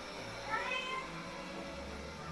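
A lynx point Siamese cat meows once, about half a second in: a short call that rises in pitch and then holds briefly.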